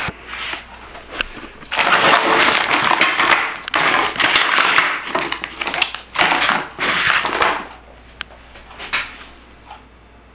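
Plastic packaging of frozen fish fillets crinkling and rustling as it is handled, in a run of bursts over several seconds with small clicks, then quieter near the end.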